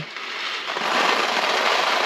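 Dry macaroni poured from its box into a foil Mylar bag: a steady rattling patter of hard little pieces hitting the foil. It builds up over the first second and then runs on evenly.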